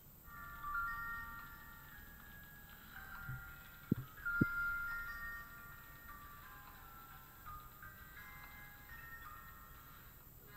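A slow melody of sustained, overlapping bell-like chime notes, with two sharp clicks about half a second apart around four seconds in.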